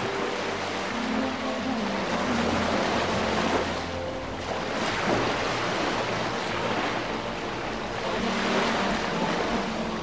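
Sea waves washing onto a shore, the surf swelling and easing several times, with faint music underneath.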